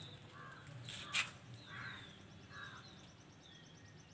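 Faint outdoor ambience with birds calling: short falling chirps repeat throughout, with a few harsher calls mixed in. A sharp click comes about a second in.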